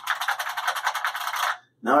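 Unicomp buckling-spring mechanical keyboard being typed on fast: a rapid run of loud key clacks that lasts about a second and a half, then stops abruptly.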